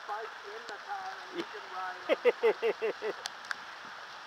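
A man talking quietly over a steady hiss of rain and bicycle tyres on wet pavement, with a few sharp ticks.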